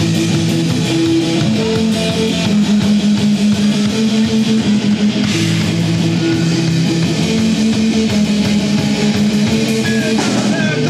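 A live rock band playing an instrumental passage loudly: electric guitars strumming chords over bass guitar and a drum kit.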